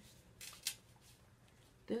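Paper sticker sheet rustling briefly in the hands, two short crisp rustles about half a second in, with a spoken word starting at the very end.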